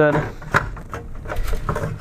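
Plastic clicks and knocks of a filament spool being seated in a plastic filament holder: one sharp click about half a second in, then a few fainter knocks.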